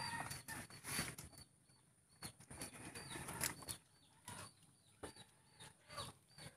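Cattle jostling and feeding at a bucket of rice bran mixed with salt: irregular scuffing, rustling and a few knocks, with faint short high bird chirps.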